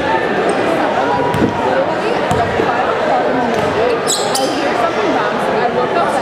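A basketball bounced a few times on a hardwood gym floor as a free-throw shooter dribbles before his shot, over the chatter of voices in the gym.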